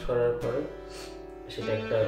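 A man's voice over music with a guitar; in the middle the voice stops and a held chord rings on its own.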